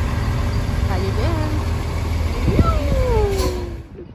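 A yellow school bus's engine running close by, a heavy, steady low rumble that fades near the end. Short gliding tones come through the rumble, and a longer falling one runs through the second half.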